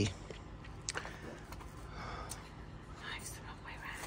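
A kitchen knife cutting red pepper on a ceramic plate: a few light clicks of the blade against the plate.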